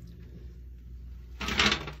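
A short, loud scraping clatter about one and a half seconds in, over a steady low hum.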